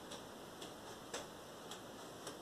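Faint, even ticking of a clock, about two ticks a second, over quiet room tone.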